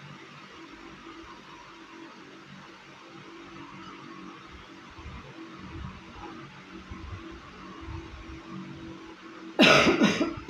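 A woman's loud, sharp cough near the end, over a faint steady hum of room tone.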